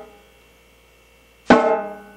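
Snare drum struck once, sharply, about one and a half seconds in, its pitched ring dying away over about half a second, after the fading ring of a stroke played just before.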